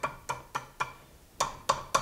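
Hand hammer striking red-hot steel on a cone mandrel, bending the hook of a poker to shape. About seven quick ringing blows, with a short pause in the middle.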